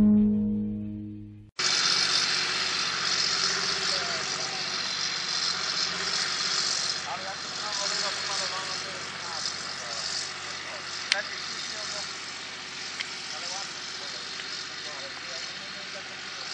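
Rock music fading out, then after a sudden cut a John Deere tractor's diesel engine running steadily under load as it pulls a cultivator across a field, slowly growing fainter. There is a single sharp click about two-thirds of the way through.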